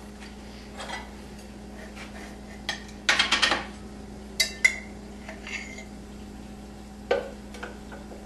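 A spoon clinking and knocking against jars and a blender jug as shake ingredients such as almond butter are spooned in: scattered knocks, a quick run of several taps about three seconds in, and a short ringing clink a little later.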